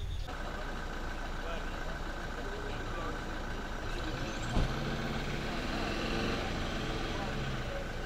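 Pickup truck engines idling steadily, with faint men's voices and a single sharp knock about four and a half seconds in.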